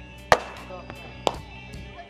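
A pitched baseball smacking into the catcher's mitt with one sharp pop, followed by a second, weaker knock about a second later.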